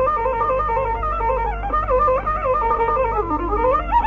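Carnatic bamboo flute (venu) playing fast, ornamented phrases with sliding gamakas in raga Shuddha Saveri. The line dips low about three seconds in, then climbs again near the end.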